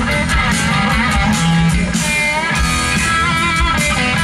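Live boogie rock band playing an instrumental passage: a loud electric guitar lead with bent notes over steady drums and bass.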